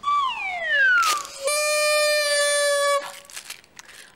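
Comic sound effects: a falling whistle-like glide lasting about a second, a short click, then a steady reedy horn-like note held for about a second and a half.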